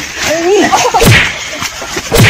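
A man's short wordless cry, then a sharp whip-like crack of a blow about a second in.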